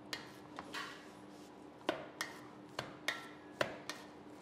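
Hands pressing and gathering a stiff semolina puri dough in a brass plate: about eight light, irregular knocks against the plate, several with a short metallic ring from the brass.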